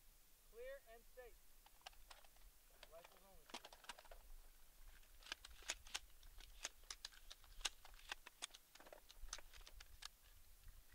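Very faint sound: a voice briefly in the first few seconds, then a run of quick, light clicks and ticks, thickest in the second half.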